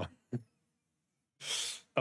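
A man's laugh trailing off, then one sharp, airy burst of breath near the end, like a laughing exhale or a sneeze.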